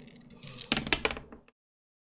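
Dice rolled onto a tabletop: a quick run of sharp clicks as they clatter and settle, then the sound cuts off to dead silence.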